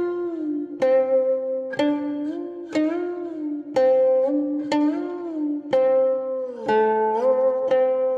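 Background music: a slow melody on a plucked zither-like string instrument, one note about every second, many notes bent in pitch after they are plucked.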